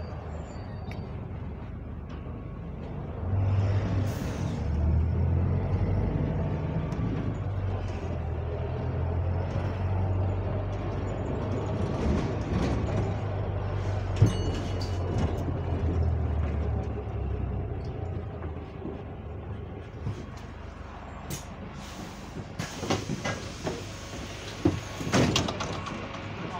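Lower-deck interior sound of a London bus on the move: a steady engine drone with rattles, louder for a stretch a few seconds in. Near the end the bus halts at a stop, with a hiss of air and knocks as the doors open.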